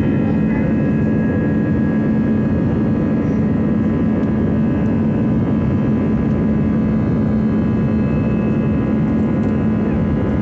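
Airliner's jet engines at takeoff thrust, heard inside the cabin as a loud, steady roar with a constant low hum under it, while the plane rolls down the runway.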